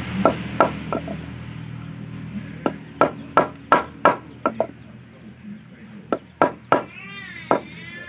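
Hammer blows on a stainless-steel wire fishing hook laid on a wooden board, sharp knocks coming in three quick runs of about three to seven strikes. Near the end a brief wavering call, an animal or bird, sounds in the background.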